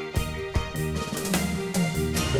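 Background music: a sustained melody over a regular beat.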